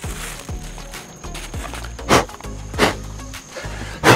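Background music with a steady beat, with two short handling noises about two seconds in and just under a second apart as a plastic Jeep tailgate trim panel is lifted off wooden boards on a work table.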